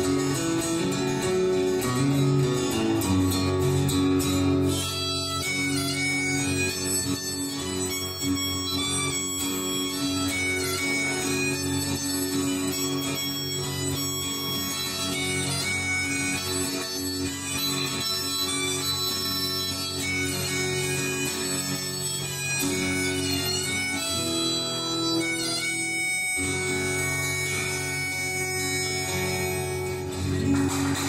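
Harmonica in a neck holder playing an instrumental break of long held notes over a strummed acoustic guitar, in a folk/country style.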